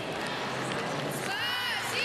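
Arena crowd noise from the spectators, with a high-pitched voice calling out from about a second and a half in.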